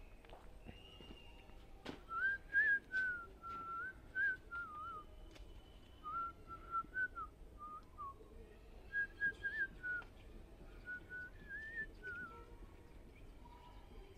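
A person whistling a wavering tune in several short phrases, starting about two seconds in, just after a sharp click.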